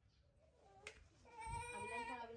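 Baby macaque monkey giving a long, high-pitched cry that starts faintly just after half a second and grows loud from about halfway. A short sharp click comes just before it swells.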